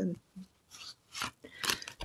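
Tarot cards being drawn and handled: three short, crisp rustles, the last the loudest.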